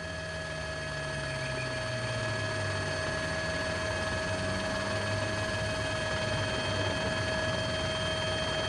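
Steady engine drone whose low pitch falls slowly, under a constant high electrical whine.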